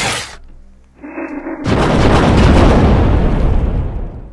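Explosion sound effect: a sudden loud boom about one and a half seconds in, fading away slowly over the next two seconds. Before it, a loud earlier boom dies away and a short muffled stretch with steady tones plays.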